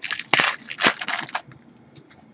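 Foil wrapper of a Topps Chrome baseball card pack crinkling and crackling as it is torn open by hand, in a quick cluster of sharp crackles from about a third of a second in to about a second and a half.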